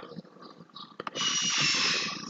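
A single sharp click about a second in, then a short hissing noise with a thin high tone that lasts about a second and a half and fades.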